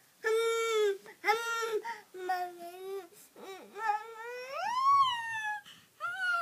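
A baby's high-pitched vocalizing: a string of about five drawn-out calls, the last and longest sweeping up in pitch and falling again near the end. The baby is smiling, so these are playful calls rather than crying.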